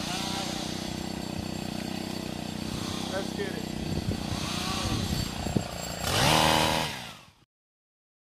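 Stihl HT 133 gas pole saw's small 4-MIX engine idling steadily, then revving up about six seconds in before the sound cuts off abruptly.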